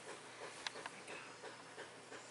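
Quiet handling sounds with a single sharp click about two-thirds of a second in.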